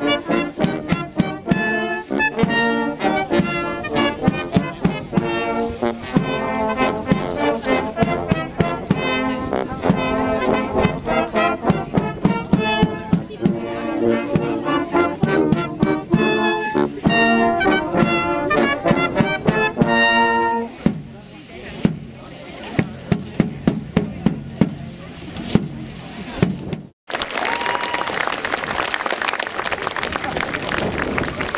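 Brass band of cornets, tenor horns, euphoniums and trombones playing a tune outdoors to a regular beat. The music stops about two-thirds of the way in, leaving quieter crowd sound. After a sudden break near the end, a steady rushing noise takes over.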